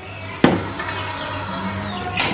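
Tripe pieces boiling hard in water in a metal pot, a steady bubbling, with a single sharp click about half a second in.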